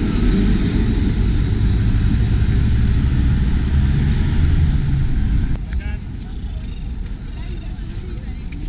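A tram passing close alongside, a loud low rumble with rail and running noise, cut off abruptly about five and a half seconds in, followed by quieter open-air street ambience.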